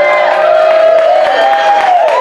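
Small crowd cheering and whooping, several voices holding long overlapping 'woo' calls that rise and fall in pitch.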